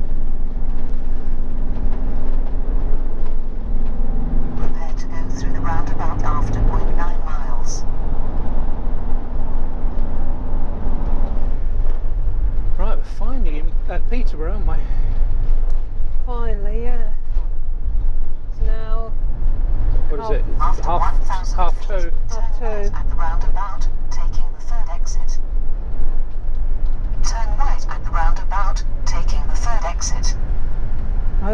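Steady low rumble of a motorhome's engine and tyres heard inside the cab while driving on the road, with voices talking at intervals over it.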